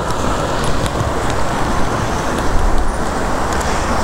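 A road vehicle passing close by: a steady rumble with tyre hiss that builds up just before and holds at full strength.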